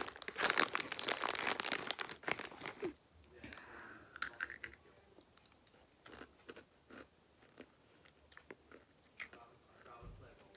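Someone biting into and chewing Takis rolled tortilla chips: loud, dense crunching for about the first three seconds, then quieter, scattered crunches.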